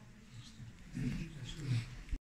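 Faint, indistinct low voices murmuring in a small room, with short murmurs about a second in and again near the end.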